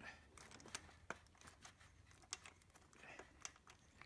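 Near silence with a few faint, irregular clicks: a metal socket and extension being turned by hand, unscrewing a spark plug from the cylinder head.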